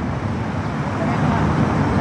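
Steady city street traffic noise, an even background wash of passing vehicles.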